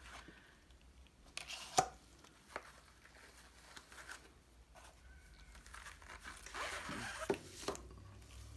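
Gloved hands handling a tattoo pen's cardboard box, paper guide card and foam insert while unboxing: quiet rustling and scraping with scattered sharp clicks, and a longer stretch of rustling with a few clicks near the end as the pen is lifted out.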